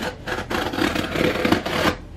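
Scissor blade dragged through the packing tape and cardboard of a shipping box, a rough scraping rasp made of several short pulls that stops just before the end.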